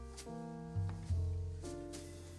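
Background music: a melody of held pitched notes over a steady bass line, a new note about every half second.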